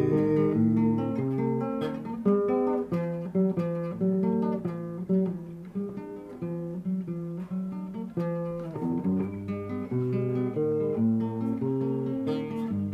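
Nylon-string classical guitar played solo, a run of individually plucked notes with chords in between.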